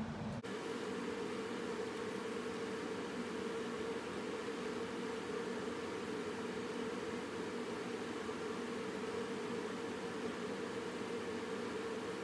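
Steady background hiss with a constant low hum, starting abruptly about half a second in.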